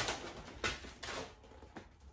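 A few short, soft rustles and crinkles of vinyl wrap film being handled and smoothed onto a car's body panel.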